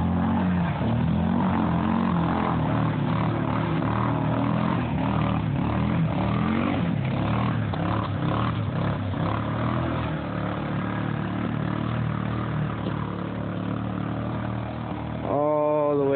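Yamaha Grizzly ATV engine running under load as the quad ploughs through deep creek water, its note rising and falling with the throttle over splashing water. The sound eases a little toward the end as the ATV gets farther away.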